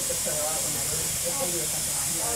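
A steady hiss fills the hospital ICU room, with faint, indistinct voices of staff talking behind it.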